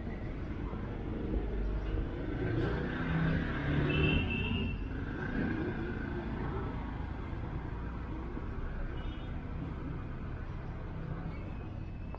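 Steady low rumble of distant road traffic, swelling briefly about four seconds in, with a few faint short high tones over it.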